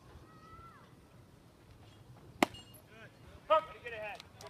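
A single sharp crack of a baseball striking bat or mitt about two and a half seconds in, then voices shouting a second later.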